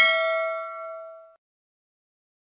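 A bell-like ding sound effect for a notification bell icon being clicked. It rings with several clear overtones and fades out over about a second and a half.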